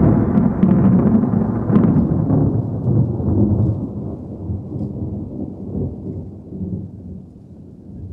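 Thunder: a sudden clap followed by a long, rolling low rumble with some crackle, which slowly fades over several seconds.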